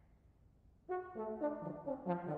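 Solo trombone starting to play about a second in after a quiet lead-in: a quick run of separate notes stepping downward.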